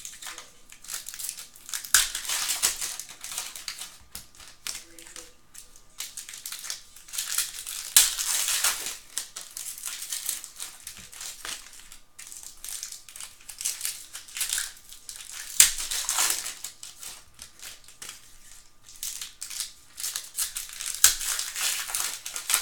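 Foil wrappers of Panini Prizm football card packs crinkling and crumpling in hand, in repeated bursts of a few seconds, with an occasional sharp click as the packs and cards are handled.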